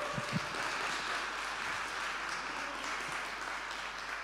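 Audience applauding steadily after a talk ends.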